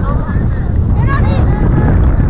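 Wind buffeting the microphone, with distant shouts and calls from players and spectators.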